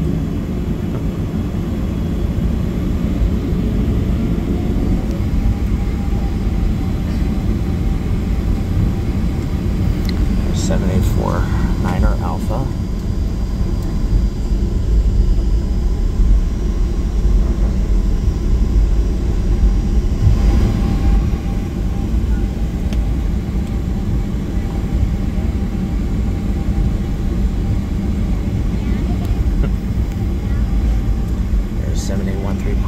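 Boeing 737-700 cabin while taxiing, its CFM56-7B turbofan engines at taxi idle: a steady low rumble with a hiss over it.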